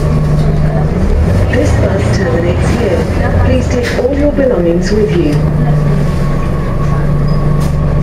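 Scania OmniCity bus's diesel engine heard from inside the saloon, running with a steady hum. About a second in the note turns lower and rougher for some four seconds before the steady hum returns.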